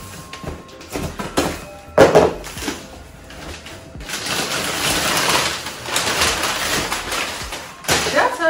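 A large cardboard box being opened: a few sharp knocks and a loud thud in the first two seconds as the taped flaps are worked open. Then about four seconds of steady loud crinkling as crumpled brown kraft packing paper is pulled out.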